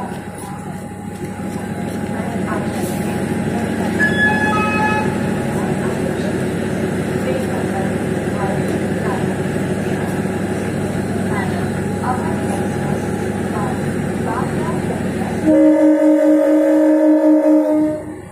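Diesel engine of a DEMU power car running steadily at the platform, with a brief high tone about four seconds in. Near the end the train's horn sounds one loud, steady blast with two pitches for about two and a half seconds before it stops abruptly, the horn given as the train departs.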